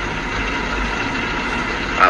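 Steady background rumble and hiss with no distinct events, much like an engine or traffic running in the background.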